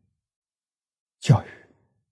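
An elderly man's voice saying one short word about a second in, after a moment of silence.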